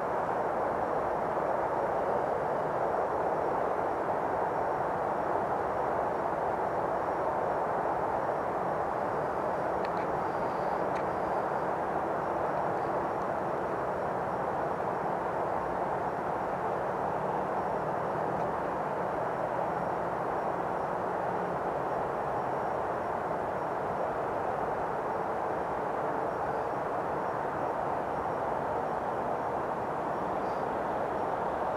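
Steady outdoor background rumble, an even noise that holds at the same level with no distinct events.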